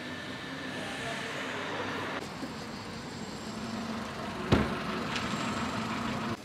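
Road traffic and a running vehicle engine: a steady rushing noise with a low hum, and one sharp knock about four and a half seconds in.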